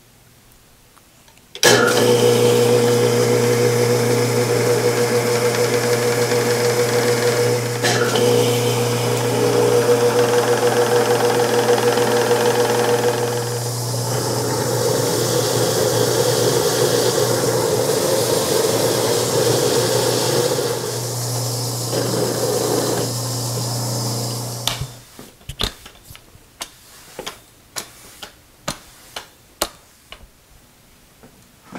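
Milling machine motor and spindle running with an end mill cutting into a steel block: a steady hum with a whine, starting about two seconds in and changing tone about halfway through as the cut goes on. It stops about 25 seconds in, followed by a series of light clicks.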